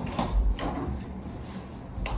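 A few low thumps and faint knocks as a person gets up and moves about a room.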